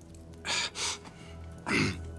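Three short, sharp breaths from a man, two close together about half a second in and a louder one near the end, over soft background music.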